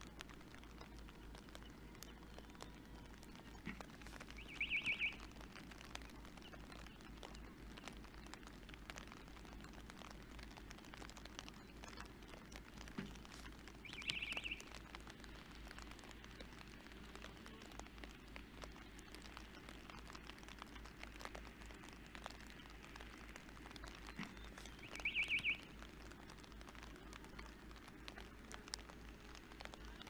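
Faint outdoor ambience in rain, with light scattered patter. Three short high-pitched chirps come about ten seconds apart, each about half a second long, and each follows a faint low knock by about a second.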